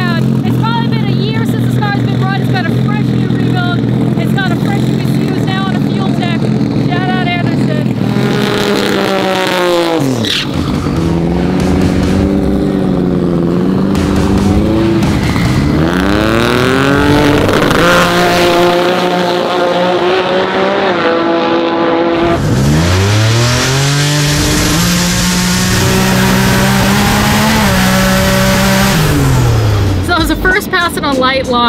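Twin-turbo Subaru EG33 flat-six in a BRZ drag car running at a steady low note, then revving in several rising sweeps, each climbing and levelling off before the pitch drops again, as it launches and pulls through the gears on a soft-launch test pass.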